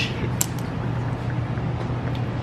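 Steady low hum, with one sharp metal click about half a second in as a hand valve spring compressor is worked on the valve springs of an LS cylinder head.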